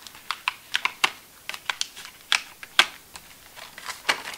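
Irregular light clicks and taps, about fifteen in four seconds, as sheets and a frosted plastic divider are handled on the metal rings of an A5 ring planner, with long acrylic fingernails clicking against the pages.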